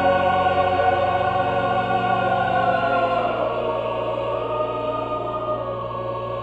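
Choir singing with organ, holding long sustained chords over a steady bass; the chord changes about halfway through and the sound slowly fades.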